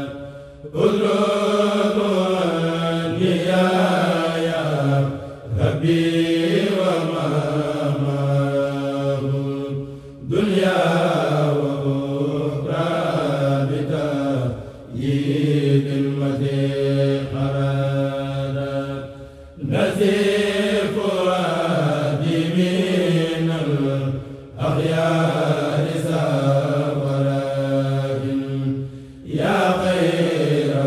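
A group of men chanting a Mouride khassida in Arabic, unaccompanied, through microphones. They sing in phrases of about five seconds, each separated by a short break.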